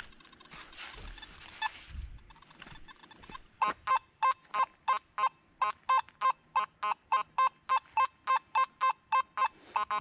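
Nokta Makro Simplex metal detector giving a rapid train of identical high-pitched beeps, about three a second, starting a few seconds in, as its coil passes over a buried coin. The beeps signal a high-conductor target that the detector still picks up with iron lying on top of it.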